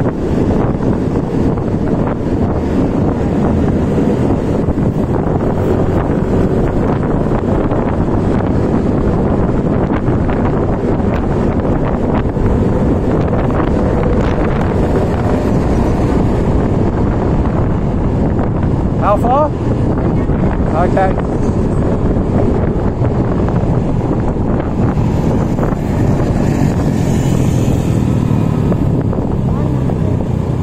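Steady wind buffeting on the microphone over the running engine and road noise of a Yamaha scooter riding through traffic. Two brief high-pitched sounds come a little past the middle.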